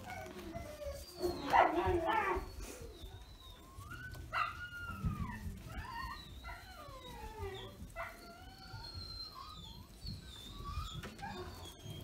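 Dogs whining: a string of short, high, falling whimpers, with one louder, longer cry about a second in.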